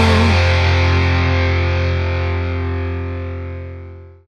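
Final sustained chord of a post-hardcore song, distorted electric guitar over a low bass note, ringing out and fading away. A lead line bends and stops just after the start.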